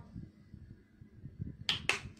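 Two sharp clicks about a fifth of a second apart near the end, over faint low handling noise.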